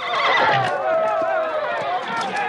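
Many horses whinnying with hooves clattering, over a crowd of voices. It starts suddenly and stays loud throughout.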